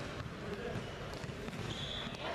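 A basketball being dribbled on a gym floor during a game, with players' and spectators' voices in the hall and a short high squeak near the end.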